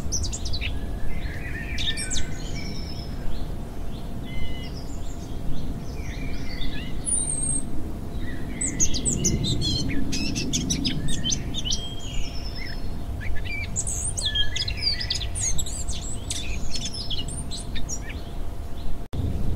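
Many birds chirping and singing in quick overlapping calls and trills, busiest about halfway through and again near the end, over a steady low rumble and a faint steady hum.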